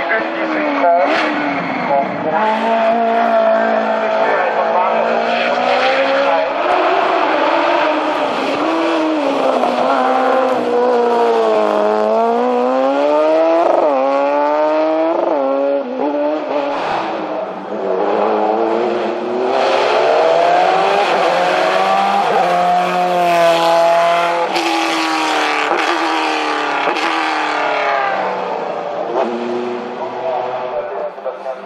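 Racing car engines at full throttle, one car after another. The pitch climbs through each gear and drops on lifts and downshifts into the bends.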